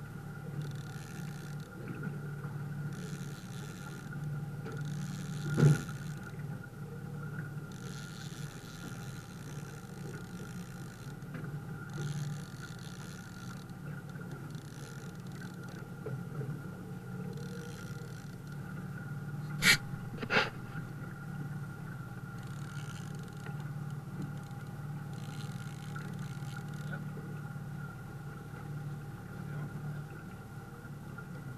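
A boat motor running steadily, a low even hum, with water slapping against the aluminium hull. Three sharp knocks stand out: a single one, then later a close pair.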